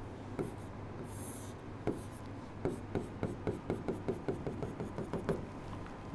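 Stylus drawing on a digital board's screen: faint scratching, then a run of quick light ticks, about five a second, from midway until near the end.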